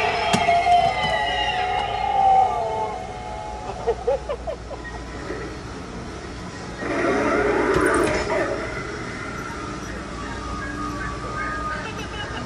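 Eerie music and spooky sound effects playing from a Halloween animatronic's built-in speaker. Gliding tones are heard early on, and a louder, noisier passage of effects comes about seven seconds in.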